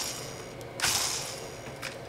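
Shimano Exsence DC baitcasting reel's spool free-spinning under its digital-control (DC) brake, giving a high whirring whine that fades. A second spin comes in about a second in and dies away. The whine is a little quieter than a Curado DC's.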